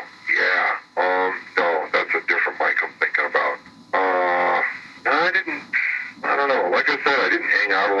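Speech only: a man talking in a recorded interview.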